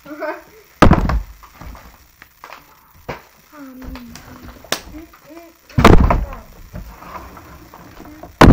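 Plastic water bottles flipped and landing on a table: a heavy thud about a second in and another near six seconds, with a sharp knock just before the second, between quiet children's voices.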